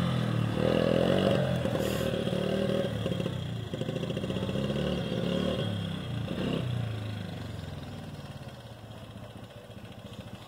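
Small youth ATV engine running under a child's throttle, its pitch rising and falling several times. It fades over the last few seconds as the quad moves away.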